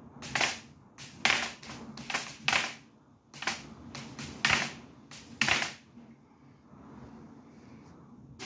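High-voltage sparks from a 200 kV voltage multiplier arcing: about seven sharp crackling snaps at irregular intervals of roughly a second, stopping about six seconds in.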